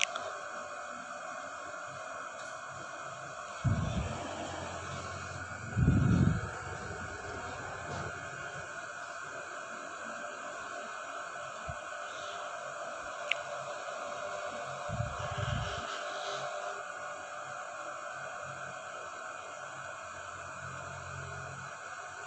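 A steady hiss as a paratha cooks dry on a hot iron tawa over a stove burner, with three short low thumps: a little under four seconds in, the loudest about six seconds in, and another about fifteen seconds in.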